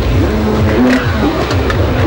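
Jet ski engine revving, its pitch rising and falling several times as the throttle is worked through turns.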